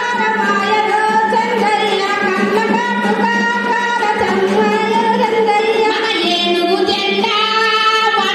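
A woman singing a song in Telugu into a microphone, amplified, in long held notes that waver and slide in pitch without a break.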